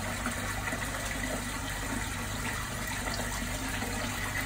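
Steady rush of running water inside a leaking manhole, with a low steady hum underneath.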